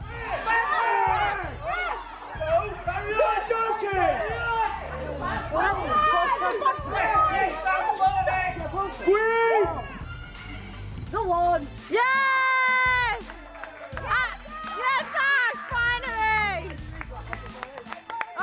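Background pop music with a steady beat and a singing voice.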